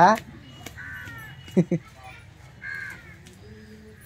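A crow cawing twice, about a second in and again near three seconds, with a brief voice sound between the caws.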